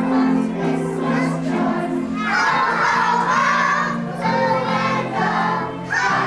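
A group singing a song together, over steady held notes of instrumental accompaniment.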